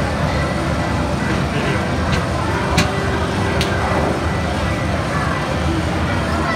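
Arcade hall ambience: a steady din of game machines, background music and distant voices. Three sharp clicks come between about two and four seconds in.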